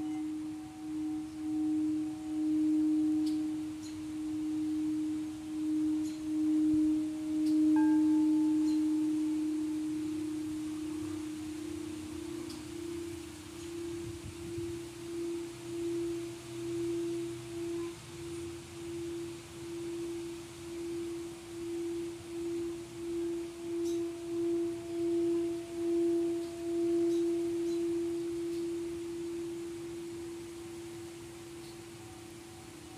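Singing bowls sung by running a mallet around the rim: one low, sustained tone that swells and fades about once a second, with fainter higher overtones above it. About midway the main tone shifts slightly higher in pitch.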